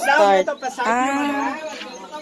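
A person's voice making two drawn-out, wordless vocal sounds, the second longer and lower.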